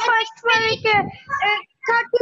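A child's high, sing-song voice reading aloud in short phrases.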